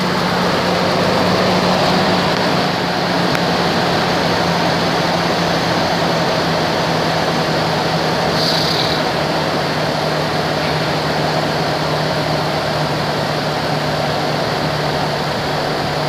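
2002 Chevrolet Trailblazer's 4.2-litre inline-six engine idling steadily, heard close up over the open engine bay.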